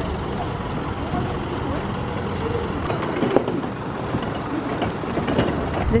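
A steady vehicle noise runs throughout, with faint voices in the background and one sharp knock a little over three seconds in.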